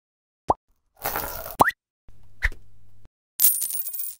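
Animated logo-sting sound effects: two short rising 'bloop' sweeps about a second apart with a swoosh between them, then a brief low hum with a single ping, and a bright shimmering swoosh near the end.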